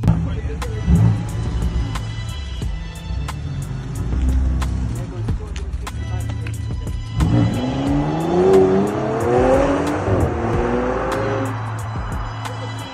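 Bentley Bentayga SUV's engine revving up as the car accelerates away, its note rising in a sweep from about seven seconds in and easing near the end. Background music with a steady beat plays throughout.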